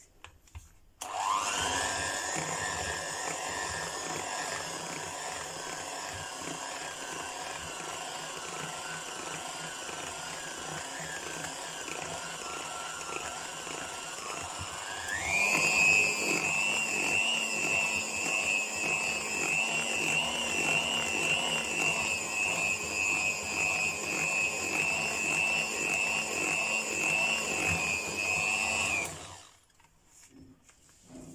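Electric hand mixer beating flour into cake batter. Its motor whine starts about a second in and sags slightly in pitch. About halfway through it jumps to a higher speed, and it stops just before the end.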